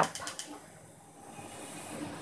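Faint steady hiss with a low hum, slowly growing louder, after the last spoken word at the very start.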